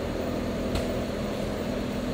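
Steady low mechanical hum, like a fan or ventilation running, with one faint click a little under a second in.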